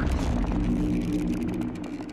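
Logo sting sound effect: the tail of a deep boom, a low hum of a few steady tones with scattered crackles, fading steadily.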